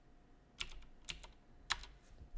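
Computer keyboard keys tapped a few times in quick succession as a dimension value is typed in, with the sharpest keystroke near the end.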